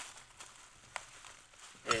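Bubble wrap rustling faintly as it is handled and pulled off a metal chain sprocket, with a light click about halfway through.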